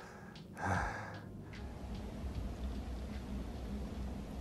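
A hiker's hard, tired exhale about half a second in, out of breath after the steep climb to the summit, over a faint low rumble.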